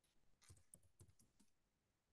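Faint typing on a computer keyboard: a quick run of key clicks starting about half a second in and stopping after about a second.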